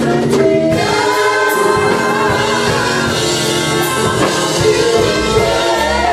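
A trio of women singing a gospel praise song in harmony into microphones, holding long notes, over instrumental backing with a steady beat.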